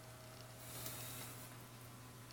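Faint steady low electrical hum with a thin higher tone above it, and a soft brief rustling hiss about a second in.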